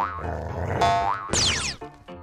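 Cartoon bouncing-ball sound effects: two springy boings, each rising in pitch at the end, then a quick falling swoop about one and a half seconds in, with light music.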